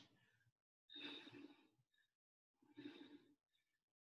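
Two faint breaths out, about two seconds apart, from a woman exerting herself through a set of dumbbell tricep kickbacks.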